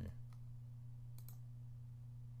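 A few faint clicks, two close together a little over a second in, over a steady low electrical hum.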